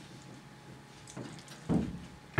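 Low murmur of quiet voices in a classroom, then one short, louder low sound near the end.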